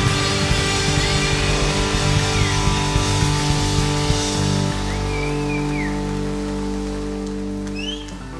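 Live rock band playing hard rock: drums and electric guitars with bent guitar notes. A little past halfway through, the drums drop out and the band holds a sustained chord.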